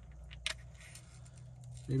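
Small cardboard box being handled and turned over in the hands: faint rustling clicks with one sharper click about halfway through, over a low steady hum.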